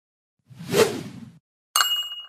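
Logo intro sound effect: a whoosh that swells and fades over about a second, then, after a short gap, a sharp hit with bright ringing chime tones that die away.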